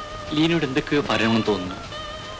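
Film dialogue: a voice speaks briefly over soft background music that holds steady sustained notes.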